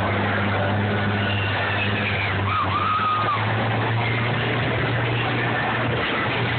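Combine harvester engines running in a demolition derby arena: a steady low drone over a rough haze of engine noise. A brief higher tone rises and falls about halfway through.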